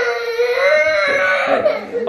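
A toddler crying in one long, drawn-out wail, distressed at a parent leaving.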